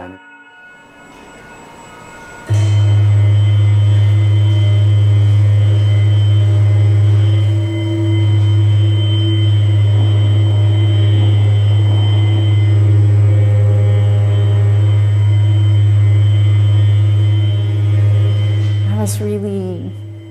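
Sound installation playing a sustained drone of layered steady tones over a strong low hum, cutting in suddenly about two and a half seconds in and dropping away near the end.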